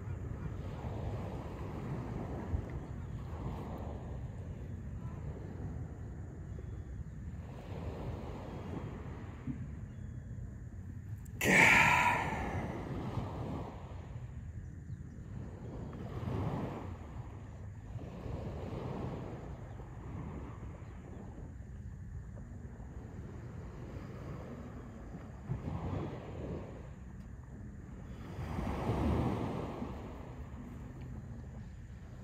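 Surf washing onto the shore in slow repeating swells, with wind on the microphone. About twelve seconds in, a loud breath is let out, the release of a held full inhale.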